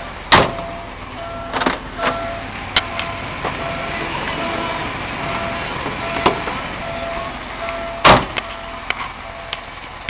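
A car's electronic warning chime beeping evenly, about once every three-quarters of a second. Over it come a series of sharp clunks and clicks, the loudest about a third of a second in and about eight seconds in, like a door or lid being handled and shut.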